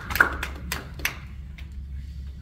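Scattered hand claps from a small audience, dying away about a second in, over a steady low room hum.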